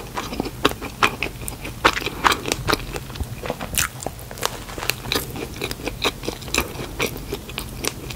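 Close-miked biting and chewing of an iced Krispy Kreme donut: many small, irregular mouth clicks and crackles as the soft dough and icing are bitten and chewed.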